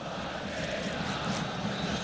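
Steady noise of a large stadium crowd, an even wash of many voices with no single sound standing out.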